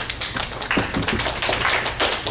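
Audience applauding: a few separate claps at first, quickly filling in to dense clapping.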